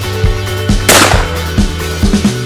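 A single shot from a Sabatti Sporting Pro over-and-under shotgun, about a second in, dying away quickly, over background music with a steady drum beat.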